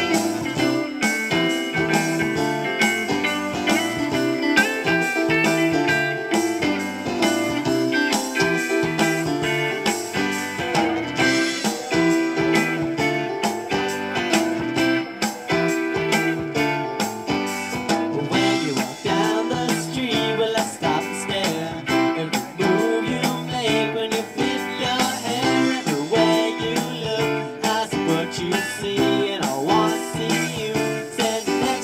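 Live rock band playing, led by electric guitar over bass, keyboard and a steady drum beat.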